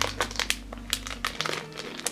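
Clear plastic wrapping on wax melt samples crinkling in quick, irregular crackles as it is handled.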